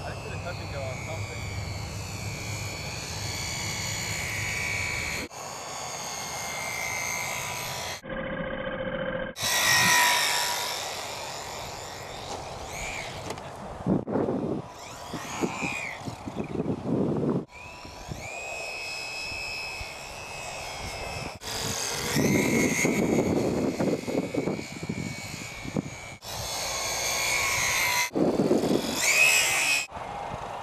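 Electric motor and propeller of a HobbyZone Super Cub RC plane whining in flight, its pitch sliding up and down with throttle and distance. The sound comes in a run of short clips joined by abrupt cuts.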